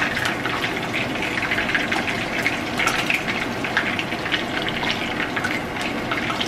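Rohu (rui) fish steaks shallow-frying in hot oil in a non-stick pan: a steady sizzle dense with small crackles and spits.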